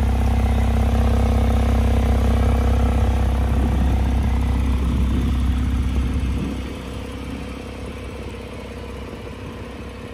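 2019 Porsche 911 Targa 4 GTS's twin-turbo flat-six idling with a steady low hum, loudest at the tailpipes and dropping in level about six and a half seconds in as the car is circled toward the front.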